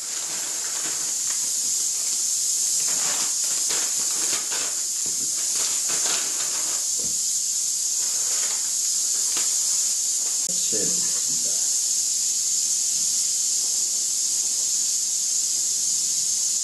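Steady high hiss of steam from a flameless self-heating cooker, its water-activated heating pack reacting beneath a pot of boiling water. Crinkling of instant-noodle packets and the noodle blocks dropping in come in the first half.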